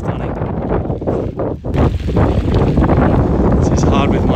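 Strong wind buffeting the microphone while riding a bicycle, a dense low rumble with a brief lull about one and a half seconds in.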